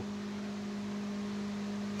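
A steady low hum on one held tone, with faint hiss.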